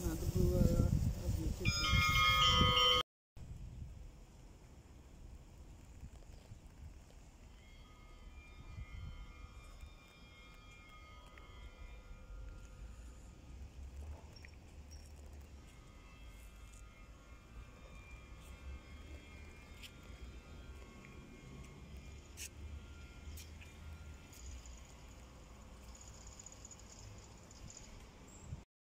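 A voice is heard in the first three seconds, then after an abrupt cut, faint outdoor ambience follows: a steady low rumble with faint, intermittent distant sounds.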